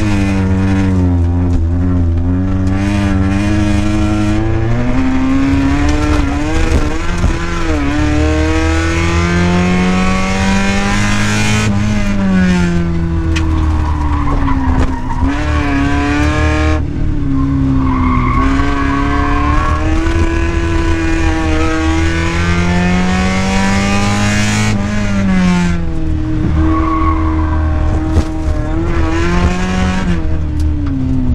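Mazda Miata's 1.6-litre four-cylinder engine heard from inside the cabin, revving up and dropping back again and again as the car is driven hard between corners. The pitch falls away sharply three times. Tyre noise runs underneath.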